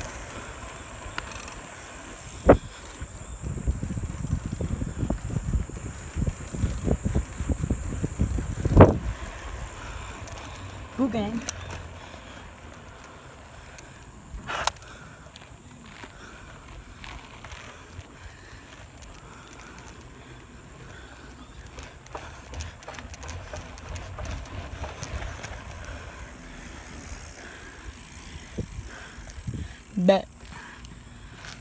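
1976 Cobra Pacific seven-speed mountain bike rolling along an asphalt road, with tyre and wind rumble that is heavier for several seconds early on and a few sharp clicks and knocks from the bike and the handheld phone.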